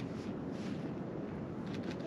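Steady wind noise on the microphone: an even, low rushing sound with no distinct events.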